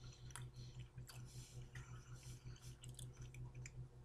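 Faint chewing of a mouthful of canned tuna, with soft, irregular wet mouth clicks, over a steady low hum.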